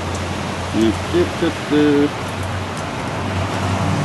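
Steady rain noise with a low hum under it, and a few short murmured voice sounds about a second in.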